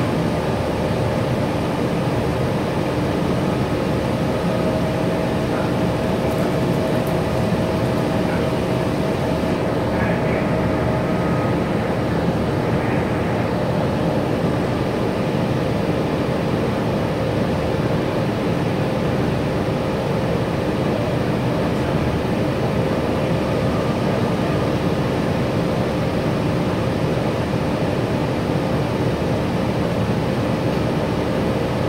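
Gillig BRT clean-diesel transit bus heard from inside the passenger cabin: a steady drone of the diesel engine and road noise, with a few faint steady whining tones over it.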